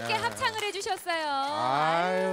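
A woman singing a Korean folk song (minyo) with wavering, ornamented notes, then a long note that slides upward in the second half, over a steady instrumental accompaniment.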